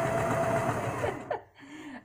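Electric sewing machine running with a steady whir while stitching, then stopping abruptly about a second in.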